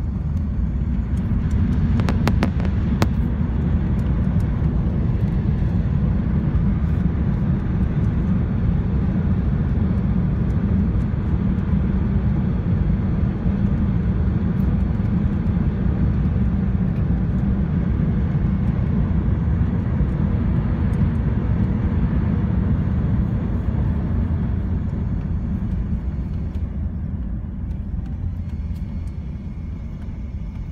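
Cabin noise of a British Airways Airbus A380 rolling out on the runway just after touchdown: a loud, steady low rumble of wheels and engines, with a few faint clicks about two seconds in. The rumble eases off near the end as the aircraft slows.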